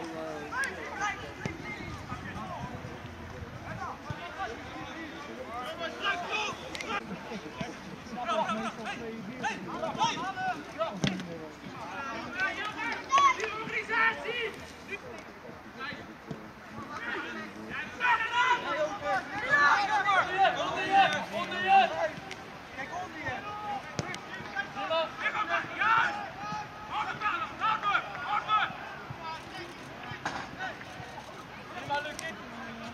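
Distant, untranscribed voices of football players and spectators calling out and talking, coming and going in spells, over a steady outdoor background, with a few short sharp knocks.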